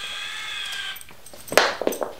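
Small electric gear motor whining steadily as it winds the cord that lifts a sliding wooden chicken coop door, cutting off about a second in once the door reaches the top. A brief, louder clatter follows near the end.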